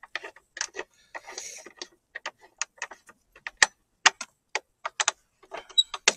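Sharp metallic clicks at an uneven pace, a few a second, from a hand tool and a screw being worked into the go-kart conversion frame.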